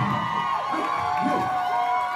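Club audience cheering and whooping at the end of a rock song, with a few rising-and-falling yells, while the band's last guitar notes ring out underneath.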